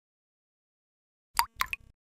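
Silence, then about a second and a half in a quick run of three or four short pops: sound effects of an animated logo outro.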